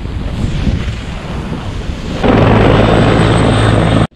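Wind rushing over an action camera's microphone as a snowboarder rides fast through snow. About two seconds in it turns louder and steadier, with a low hum under the rush, then cuts off abruptly.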